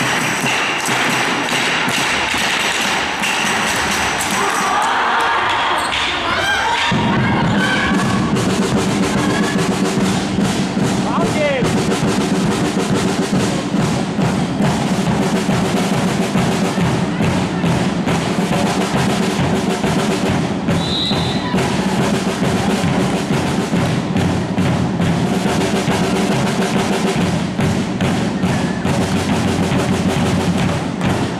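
Handball game in a sports hall: the ball thumping on the court and players' footsteps, with crowd voices. From about seven seconds in, music with a drumbeat runs underneath.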